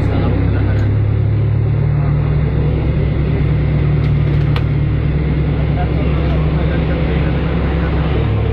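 Steady low drone of a vehicle's engine and running noise, heard from inside the moving vehicle.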